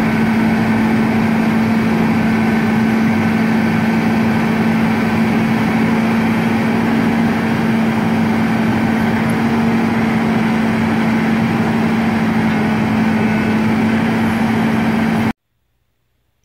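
Utility bucket truck's engine running steadily at idle, powering the raised hydraulic boom, with a constant hum under the engine noise. It cuts off suddenly near the end.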